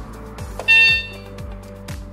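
MQ-6106 electronic keyboard playing a programmed drum pattern, a bass drum about twice a second with hi-hat ticks between. A short, loud, bright electronic tone sounds about two-thirds of a second in.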